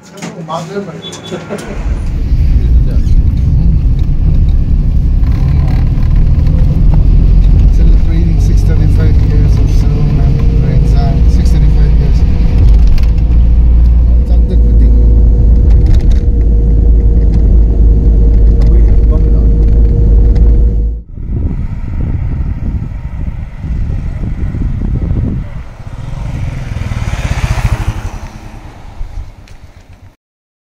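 Loud, steady low rumble of a car on the move, heard from inside the cabin. It cuts off abruptly about twenty seconds in, and quieter, mixed sounds follow.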